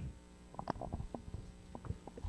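Handheld microphone being handled and passed from one person to another: scattered faint knocks and clicks of handling noise.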